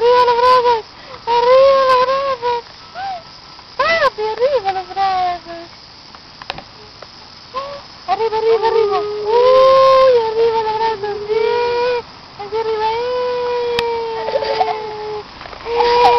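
A toddler's high-pitched drawn-out 'ooh' calls, several in a row with short gaps, each held and gently wavering in pitch. The longest comes near the end and lasts about two seconds, slightly falling. There is a quieter stretch in the middle.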